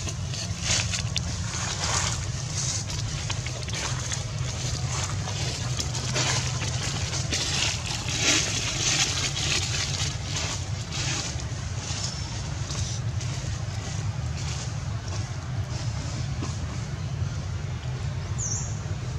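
Outdoor background noise: a steady low rumble with many brief rustles and soft crackles scattered through it.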